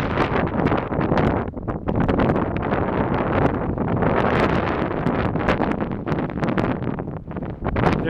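Gusty wind buffeting the microphone, a loud, continuous rumbling rush that rises and falls with the gusts.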